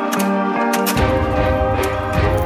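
Background music with a melody of sustained notes and short plucked attacks; a deeper bass part comes in about halfway through.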